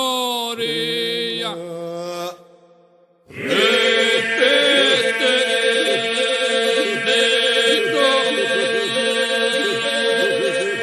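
Albanian Lab-style polyphonic singing: voices carrying a melody over a steady held drone. The music falls to near quiet a little over two seconds in, then comes back in full about a second later.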